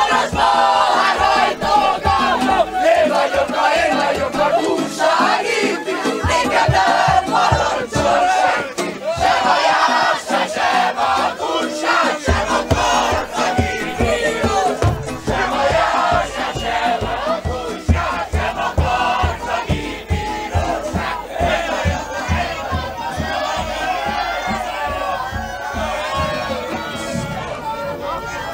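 Many voices shouting and singing together in a loud, rowdy chorus, with a steady low beat coming in about halfway through.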